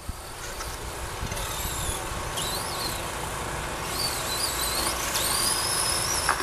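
Electric short course RC trucks racing: high-pitched motor whines that rise and fall as the drivers work the throttle, over a steady rushing noise that grows slowly louder.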